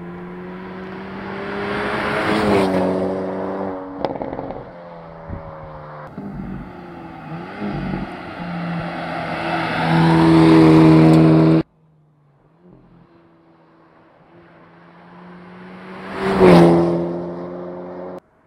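Hyundai Elantra N's 2.0-litre turbocharged four-cylinder engine heard from the roadside in several cut-together passes. The engine note drops in pitch as the car goes by about two and a half seconds in. The car then pulls hard with the engine note climbing until the sound cuts off abruptly near twelve seconds, and a louder pass-by comes near the end.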